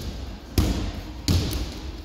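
Round-off and back somersault on a wrestling mat: a light thump at the start, then two heavy thuds about three-quarters of a second apart as hands and feet strike the mat and the landing follows.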